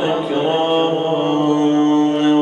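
A man's voice chanting an Arabic supplication through a microphone, holding long, steady melodic notes.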